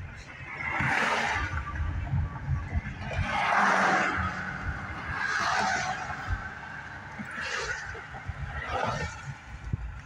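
Inside a moving car at road speed: a steady low rumble of tyres and engine, with about five swells of rushing noise, each a second or so long.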